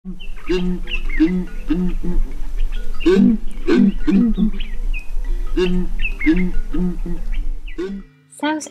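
Southern ground hornbills booming: deep, hooting notes in repeated groups of about four, one group starting about half a second in and another near the end, with a denser run of calls around the middle. Small birds chirp in the background over a steady low hum.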